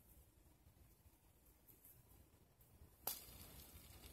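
Near silence, then about three seconds in a single sharp click as the homemade acrylic card fidget spinner is flicked into motion, followed by a faint whir as it spins freely on its ball bearing.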